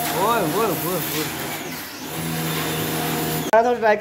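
Electric pressure washer running, its motor humming steadily under the hiss of the water jet hitting a car wheel, at a pressure called very strong. A voice calls out over it briefly, and the machine sound cuts off abruptly about three and a half seconds in, giving way to talking.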